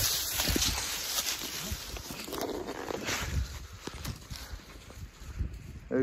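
Footsteps through dry leaf litter and brush: an irregular run of rustles and small cracks.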